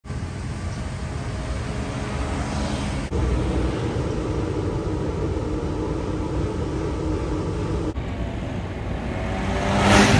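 Road traffic: a car's engine and tyres on the road, a steady hum, with a louder pass-by swelling near the end.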